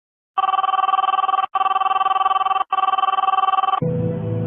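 Telephone bell ringing: three rings of about a second each, with very short breaks between them.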